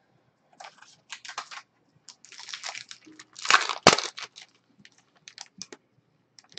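Trading cards and plastic card holders being handled: irregular rustling and crinkling with small clicks, swelling about halfway through to the loudest stretch with one sharp click.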